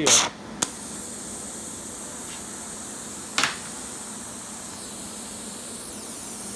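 Small gas torch running on electrolysis gas being lit with a jet lighter: a sharp burst and a click in the first second as it catches, then the steady hiss of the burning gas jet, with one more click about halfway through.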